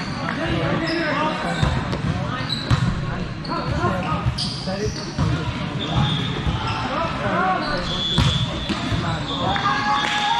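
Busy indoor volleyball hall: many voices chattering in a large echoing space. Through it come several sharp ball strikes and short, high squeaks scattered throughout.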